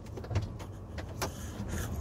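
A low steady background hum with a few faint clicks.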